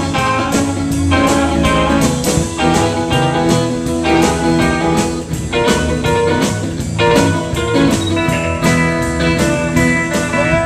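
Live rockabilly band: electric guitar playing over a steady drum beat, about four beats a second.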